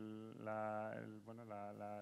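A man speaking faintly with drawn-out vowels, heard more quietly than the surrounding speech: the panelist's original Spanish voice, without English interpretation over it.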